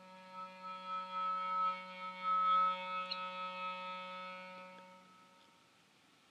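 Instrumental accompaniment music: one sustained chord, a low note under several higher ones, that swells and then fades out about five seconds in.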